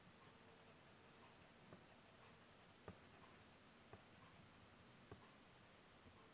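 Faint pencil strokes scratching on drawing paper, with four soft ticks about a second apart.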